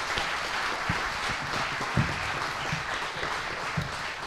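Audience applauding, with the clapping easing off near the end.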